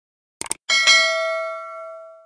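Two quick mouse clicks followed by a bright bell ding that rings and fades away: the click-and-notification-bell sound effect of a YouTube subscribe-button animation.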